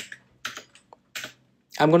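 Computer keyboard being typed on: a few separate keystrokes with quiet gaps between them.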